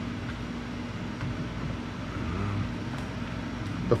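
Steady low mechanical background hum that swells slightly a little past the middle, with a few faint light clicks of a speaker being handled and set into a plastic saddlebag opening.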